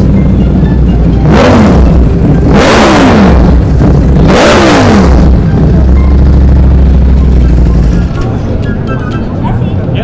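A sport motorcycle engine revved three times in quick succession, the pitch dropping away after each blip of the throttle, over a steady bass line of background music.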